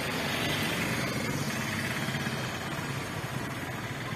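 A steady engine drone with street noise, like a vehicle idling close by.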